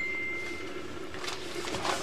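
A high, steady ringing tone fading out in the first half second, then faint rustling of a cardboard parts envelope and plastic packaging being handled.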